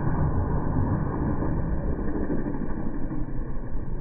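Steady, muffled low rumble of a stunt motorcycle's engine as it bursts through a burning wall and a fireball goes up; the sound is dull, with no treble, and has no distinct crash in it.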